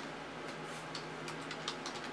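Computer keyboard being typed on: a short run of light, irregularly spaced keystrokes as a name is entered.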